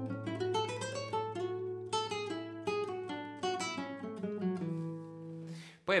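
Nylon-string classical guitar played with the fingers: a quick single-note melody plucked with free strokes, the finger leaving the string after each note, over a sustained low bass note. The melody slows near the end and the last notes ring before stopping.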